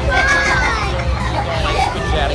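A young girl's high-pitched voice, with one drawn-out sound that rises and then falls, over the steady chatter of a crowded room.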